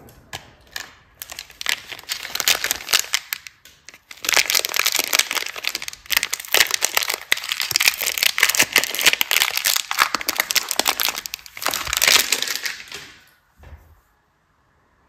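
A crinkly plastic soap wrapper being handled and torn open by hand: a dense run of crackling and crinkling with brief pauses.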